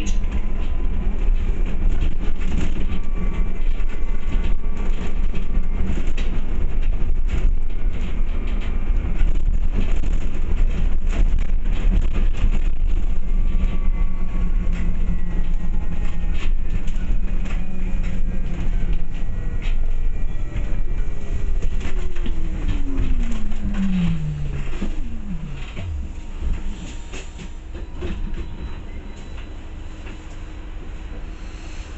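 Inside a moving single-deck bus: steady low road rumble and frequent fittings rattling while the bus runs. Later, a whine from the drive falls steadily in pitch as the bus slows, and the overall noise drops.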